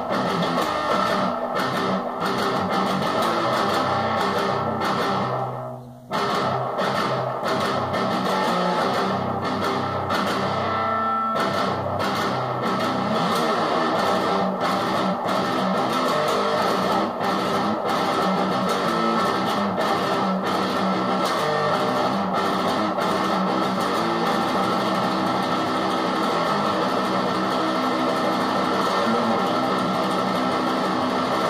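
Electric guitar in drop D tuning playing a chugging, palm-muted metal breakdown riff, with a brief stop about six seconds in.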